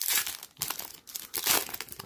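Foil wrapper of a 2019 Panini Prizm football card pack crinkling and tearing as it is pulled open by hand, in a few short bursts, the loudest about one and a half seconds in.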